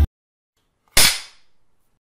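Music cuts off abruptly, then about a second in comes a single sharp crack of a film clapperboard being snapped shut, dying away over about half a second.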